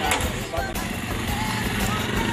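Motorcycle engine running as the bike pulls away carrying two riders, its steady low hum growing stronger about a second in, with music mixed in.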